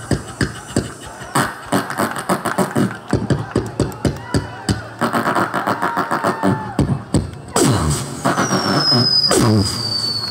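Beatboxing into a stage microphone through the PA: a fast run of vocal drum hits and clicks, with some hummed pitched sounds in the middle and falling bass sweeps near the end.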